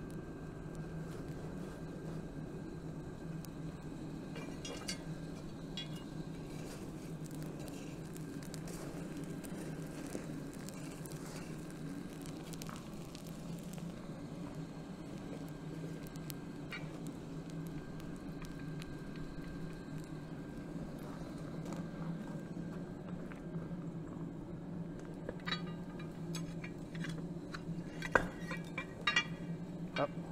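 Forge running with a steady low drone while a cast iron anvil heats in the flames. Near the end come metal clinks and one loud knock as the anvil is shifted on steel bars.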